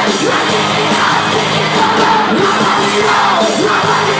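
Live pop-rock band playing loud through a concert PA, with sung vocals, heard from inside the audience with voices in the crowd yelling along.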